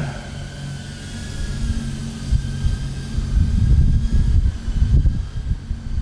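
Low, uneven rumble with a faint steady hum above it, swelling from about three seconds in and easing off near the end.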